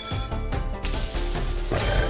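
Slot game win sound effects: chiming tones, then from just under a second in a bright cascade of clinking coins over the game's music as the win is counted up.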